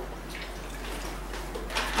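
Liquid, fruit juice from a carton, poured in a steady stream into a blender jar over chopped vegetables and fruit.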